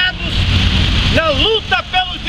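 A man speaking, his voice starting about a second in, over a steady low background rumble.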